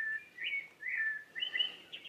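A bird chirping: about four short whistled notes, each curving up and down, roughly half a second apart.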